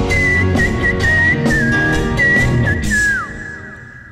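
A rock band playing live, ending a song: a high, whistle-like lead melody with bends and a falling slide, over drums, bass and guitar. The music fades away over the last second.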